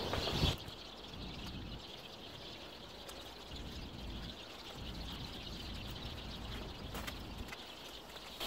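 Faint, steady outdoor background noise, after a brief louder sound right at the start.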